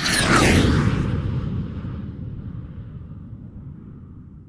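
A cinematic whoosh-and-boom sound effect: a fast swell into a deep boom with a falling high shimmer, then a long rumble that fades slowly.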